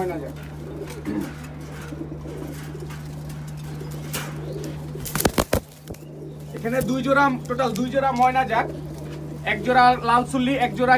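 Domestic pigeons cooing in a wire cage, the coos coming mostly in the second half. A brief flurry of sharp clicks or knocks falls around the middle, over a steady low hum.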